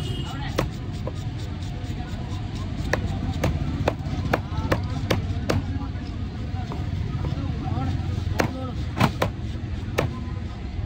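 Heavy cleaver chopping through fish onto a wooden log block: a run of sharp, irregular chops, about two a second for a while, with the loudest strikes close together near the end. A steady low traffic rumble runs underneath.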